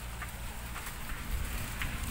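Rustling and crackling of leaves and vines being pushed through, with scattered small ticks and a steady low rumble on the microphone.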